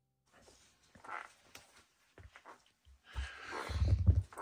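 Faint handling noise on a cloth-covered table: a few small clicks and knocks, getting louder with low thumps in the last second.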